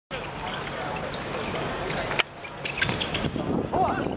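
Voices of footballers and onlookers calling out during play, with scattered sharp knocks from the ball being kicked. The background level drops suddenly about halfway through, at an edit.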